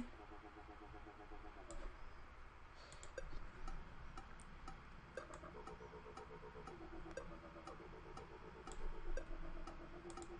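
Faint dubstep wobble bass from NanoStudio's Eden software synth: a held synth note whose tone pulses rapidly and evenly, its filter swept by a sine-wave LFO. It plays for about a second and a half at the start, then again from about halfway until just before the end.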